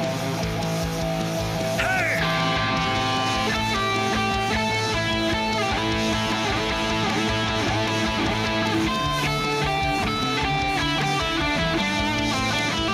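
Rock and roll lead guitar solo on a Jackson electric guitar, played in quick repeated note patterns with a string bend about two seconds in, over a backing of bass and drums.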